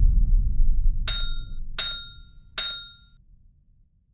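Sound effects for an animated logo end card: a deep boom's low rumble dies away, then three bright metallic dings about three-quarters of a second apart, each ringing briefly.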